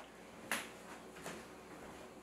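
A single sharp knock or click about half a second in, followed by a couple of much fainter ticks over quiet room tone.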